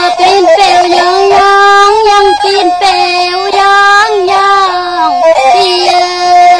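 Tai Lue khap singing: a high voice holds long, ornamented notes that waver and bend at their ends.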